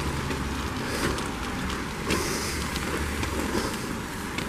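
Street traffic on a wet city road: a steady rumble, with a louder hiss of passing tyres about two seconds in.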